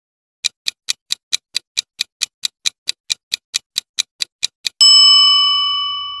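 Countdown timer sound effect: a clock ticking evenly, about four to five ticks a second, then a bell ding near the end that rings on and slowly fades.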